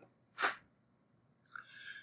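One short, sharp burst of breath noise, like a sniff or stifled sneeze, about half a second in, then a softer hiss just before speech resumes.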